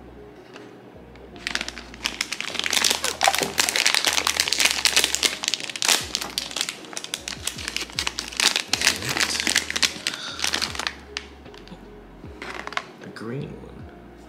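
A plastic blind-box bag for a Dimoo figure being crinkled and torn open by hand: a long run of crackling from about a second and a half in until near the end, then it stops as the figure comes out.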